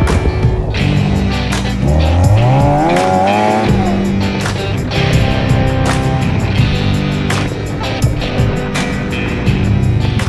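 Off-road buggy engine being driven hard, revving up with a rising pitch about two seconds in, with tyres skidding, over background music.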